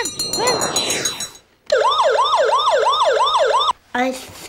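A siren sound effect wailing rapidly up and down, about three to four sweeps a second, for about two seconds in the second half. It is preceded by a noisy rush with falling sweeps in the first second and a half.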